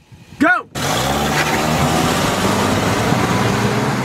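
Car accelerating hard from a standstill, its engine note climbing slowly in pitch. The sound cuts in abruptly just under a second in.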